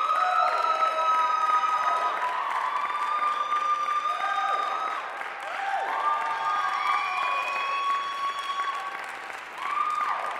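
Audience applauding and cheering, with long whoops that slide down at their ends over steady clapping.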